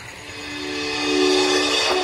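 A swelling hiss with a few steady held tones underneath, growing louder across the two seconds: an edited riser-type sound effect leading into a caption.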